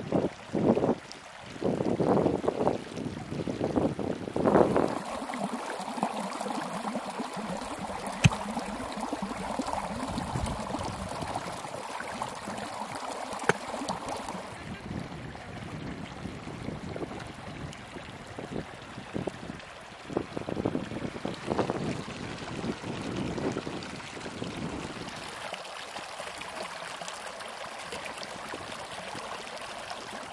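Shallow mountain stream running over stones, a steady rush of water. Louder irregular bursts break in during the first few seconds and again around twenty seconds in.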